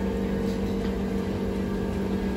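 Steady machine hum with several held tones over a low rumble.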